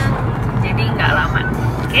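Car cabin noise while driving: a steady low engine and road rumble. A brief faint stretch of voice comes in about a second in.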